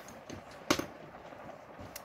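Stiff kraft card being handled as a folded envelope panel is swung open and shut, with one sharp tap about two-thirds of a second in.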